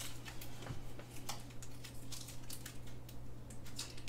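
Light, scattered clicks and rustles of cards and paper being handled by hand, over a low steady hum.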